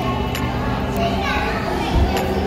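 Children playing in a play area: a steady din of kids' voices and calls, with a few short knocks.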